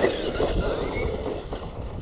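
Arrma Talion V3 RC truck's brushless electric motor whining and its tires running over dirt as it accelerates away, the sound fading as it goes, with wind on the microphone.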